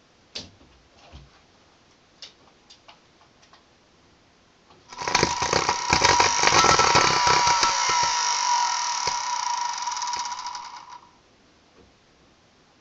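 A vacuum cleaner's brushed universal motor, fed from a variac directly to its brushes, starts about five seconds in and runs for about six seconds with a high whine and heavy crackling from arcing at the brushes and commutator, then cuts out. The motor is burning out. A few faint clicks come before it starts.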